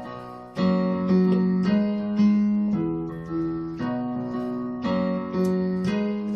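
Yamaha Portable Grand digital keyboard with a piano voice, played with both hands. Chords and notes are struck about twice a second over held low notes, each ringing and fading.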